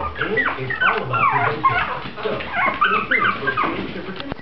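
Mi-Ki puppies yipping and whimpering in play: many short, high cries that fall in pitch, overlapping several times a second.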